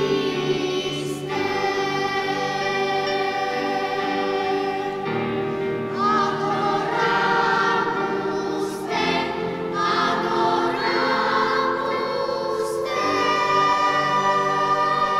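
Choir singing a sacred song in a church, sustained chords that move to new ones every few seconds.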